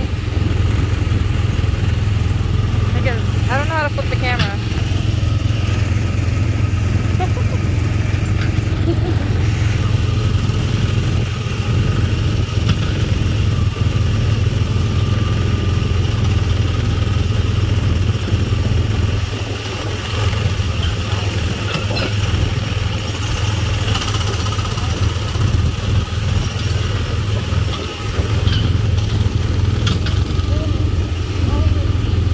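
Small gasoline engine of a Tomorrowland Speedway ride car running steadily, a low droning hum that holds at one pitch as the car drives along the track.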